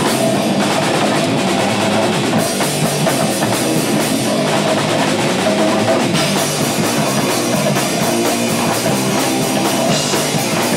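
Hardcore band playing live: a fast, loud drum kit with crashing cymbals and distorted electric guitar, continuous through the whole stretch.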